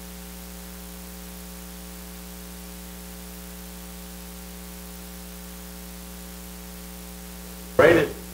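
Steady electrical mains hum: a low, unchanging buzz with a ladder of overtones over faint hiss. A voice speaks briefly near the very end.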